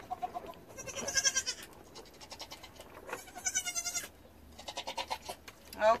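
Nigerian Dwarf goat kid, a few days old, bleating: three quavering bleats a second or two apart.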